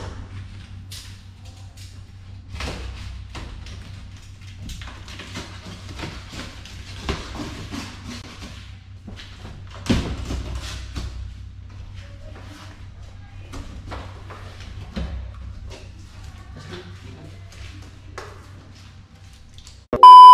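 Packing tape on a large cardboard box being slit and the box opened, with repeated scraping, tearing and rustling of cardboard and a sharp thump about halfway through, over a steady low hum.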